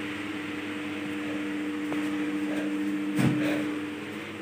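A steady electrical motor hum, like a running fan, with a single short knock a little after three seconds in.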